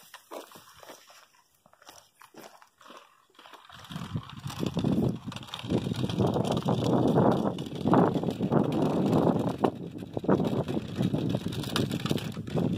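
Truper measuring wheel rolling over asphalt scattered with grit, a dense crunching rattle that sets in about three and a half seconds in, after a few light taps.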